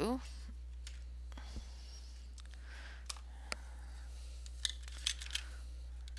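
A handful of scattered light clicks and taps as wooden coloured pencils are picked up and handled, over a steady low hum.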